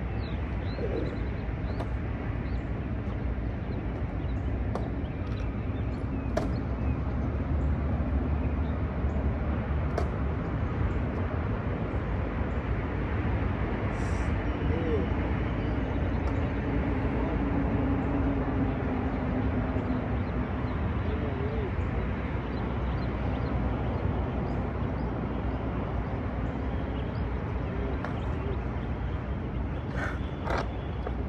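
Open-air ambience: a steady low rumble with a hiss over it, a few bird chirps, and several faint sharp clicks in the first half.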